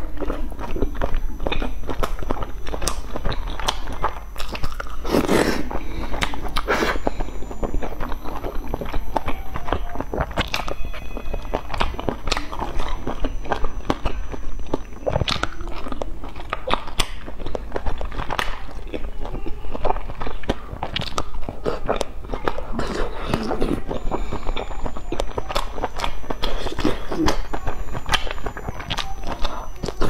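Close-miked eating: biting and chewing of malatang hot pot food dipped in sesame sauce, a dense, unbroken run of small mouth clicks and smacks.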